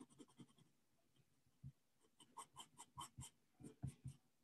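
Faint scratching of a white pencil stroking across toned sketchbook paper, a run of short quick strokes, about five a second, in the second half.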